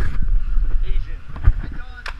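Rushing water of a FlowRider sheet-wave machine, with heavy low wind rumble on the microphone and voices in the background. A sharp thump comes about one and a half seconds in.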